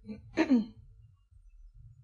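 A woman clearing her throat once into a lectern microphone, a short sound about half a second in.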